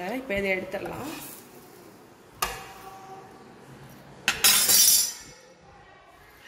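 Slotted metal spatula and ceramic plate clinking against the tawa as a cooked paratha is moved off the griddle: one sharp clink about two seconds in, then a louder ringing clatter a little after four seconds.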